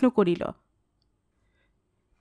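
A woman's voice reading a Bengali story aloud, breaking off about half a second in; the rest is dead silence.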